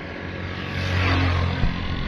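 A road vehicle passing close by, its tyre and engine noise swelling to a peak about a second in and then easing off.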